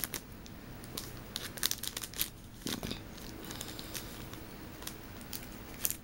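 Paper packaging crinkling and tearing as a mailer is opened by hand: a run of scattered crackles and rustles, busiest about one and a half to two and a half seconds in.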